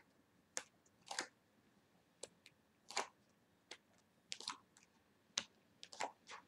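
Tarot cards being dealt from the deck and laid onto a cloth-covered table: about a dozen soft, short flicks and taps at an uneven pace as each card slides off the deck and is set down.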